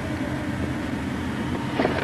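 Steady low mechanical hum and rumble, like a motor or engine running, with a couple of faint clicks near the end.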